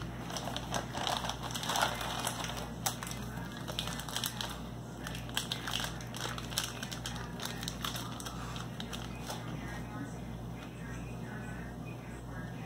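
A Mentos candy roll's wrapper being torn open and picked at by hand: irregular crinkling and crackling with small sharp clicks, thinning out over the last couple of seconds.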